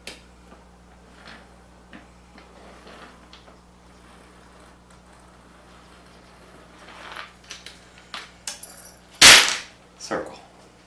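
Faint ticks and clinks of a light metal chain and pencil dragged around pine boards as a circle is traced. A cluster of sharper clicks starts about seven seconds in, and near the end there is a single loud, sharp clack.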